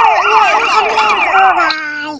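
Toy ambulance's electronic siren sounding a fast warble, its pitch sweeping up and down about four times a second, cutting off shortly before the end.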